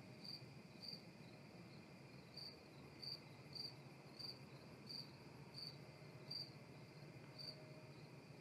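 Faint crickets chirping: short, high chirps about every half second, with a few gaps, over a low steady hiss.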